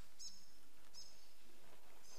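Two short, high chirps from a small bird, about a second apart, over a steady room hiss.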